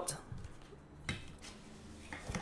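Faint rustling and scraping of a cardboard watch box being slid out of its paper sleeve, with one light tap about a second in.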